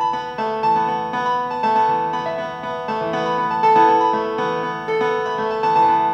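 Software synthesizer playing a randomly generated sequenced pattern built from a chord progression: a stepwise line of held keyboard-like notes, a new one about every half second, over sustained chord tones.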